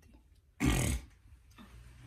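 A woman's short, loud burp of about half a second, just after drinking.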